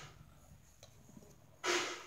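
A single short, breathy exhale close to the microphone near the end, a smooth hiss lasting about a third of a second, after a quiet stretch of room tone.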